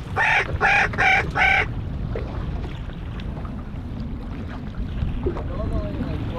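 A person laughing in four short bursts at the start, then a steady low rush of wind and choppy water.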